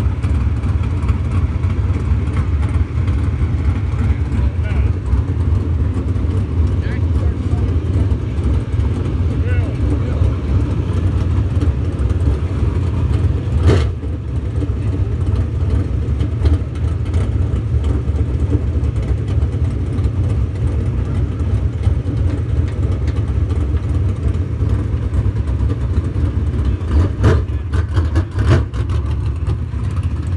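Dirt late model race cars' V8 engines running as the cars circle the track, a steady low rumble. A single sharp knock comes about 14 seconds in.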